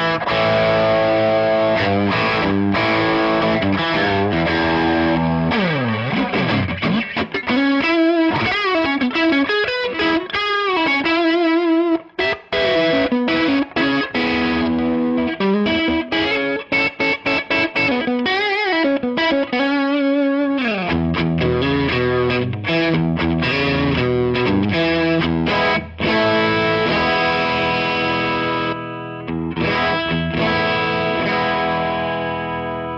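Electric guitar played through a Fender Hot Rod Deluxe III tube combo with a Celestion speaker on its drive channel, giving a distorted tone. It starts with chords, then a long falling pitch sweep about six seconds in, then single-note lead lines with wide vibrato and bends.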